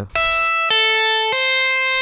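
Electric guitar playing a slow three-note tapping figure on the high E string: a right-hand tapped note at the 12th fret, pulled off to the 5th fret, then hammered on at the 8th. Each note rings for about half a second, evenly and at the same volume.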